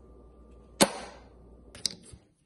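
A wood-faced fridge magnet, dusted with baby powder, clacks onto a refrigerator door with one sharp click a little under a second in, followed by a lighter double tap near the end.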